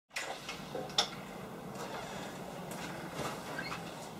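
Shop door being opened: faint room tone with a sharp latch click about a second in and a few faint hinge squeaks near the end.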